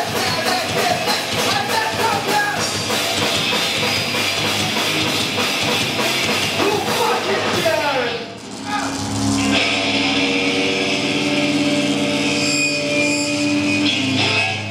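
Rock band playing live and loud: drums beating steadily under distorted electric guitars and a voice. About eight seconds in, the beat stops after a falling slide and the guitars are left ringing on long held notes.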